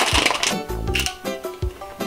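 Plastic snack wrapper crinkling as it is torn open, mostly in the first half second, over background music with a steady beat.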